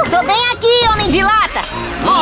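A cartoon woodpecker's warbling, wavering laugh over background music.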